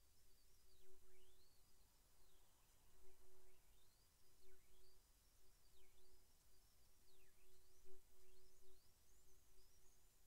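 Near silence: faint room tone, with faint high whistles that sweep down and back up over and over.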